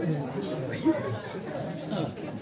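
Indistinct chatter: several voices talking at once, none clearly picked out.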